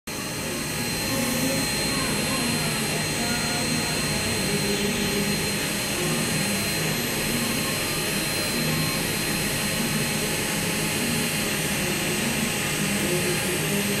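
Saeyang micromotor handpiece driving a rotary FUE punch, running steadily with a constant thin high whine over a hiss as it cores out beard follicles.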